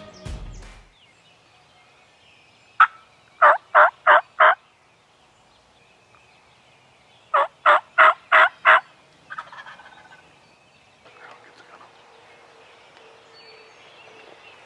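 Two series of turkey calls a few seconds apart, each about five loud, evenly spaced notes, after music fades out at the start.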